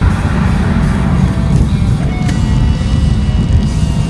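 Steady low rumble of a car driving on a paved road, heard from inside the cabin: engine and tyre noise.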